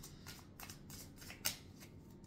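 A deck of tarot cards being shuffled by hand: a run of soft, quick card flicks and slides, with one sharper snap of the cards about one and a half seconds in.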